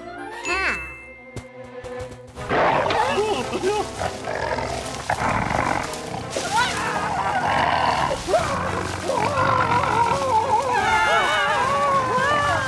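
Cartoon soundtrack: music under a busy mix of wordless character vocal sounds, which starts loudly about two and a half seconds in. A short rising glide sound comes in the first second.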